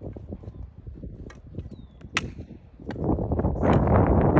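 A single sharp crack of a hockey stick slapping a puck off a plastic shooting pad about two seconds in, with lighter clicks around it. Near the end, wind buffets the microphone with a low rumble.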